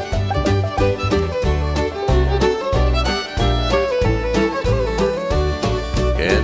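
Bluegrass instrumental break: a fiddle carries the melody over steady alternating bass notes, with sliding notes about two-thirds of the way through.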